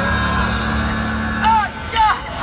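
A low chord held steady through a festival PA as a song begins, with fans whooping from about a second and a half in.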